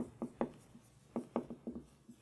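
Marker writing on a whiteboard: a quick run of short strokes and taps, with a break of about half a second after the first few.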